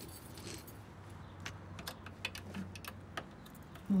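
A bunch of keys jangling in hand, with light, irregular clicks as they are fumbled through to find the right one.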